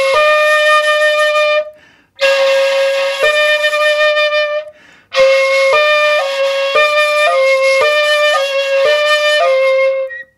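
Shakuhachi (bamboo end-blown flute) playing slow koro koro practice, changing between the two 'ko' fingerings, which sound a little apart in pitch. There are three phrases with short breaths between them. In the first two a held note steps once to the higher note; in the last the two alternate about twice a second.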